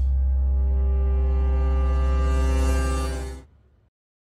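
Electronic logo sting: a held synthesized chord over a very deep, loud bass tone, with a high airy shimmer joining about halfway, fading out at about three and a half seconds.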